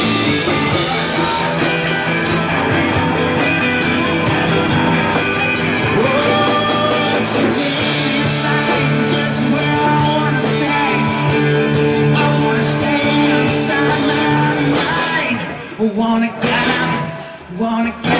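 Rock band playing live, with electric guitar to the fore. Near the end the full sound breaks off briefly into a few separate accented hits.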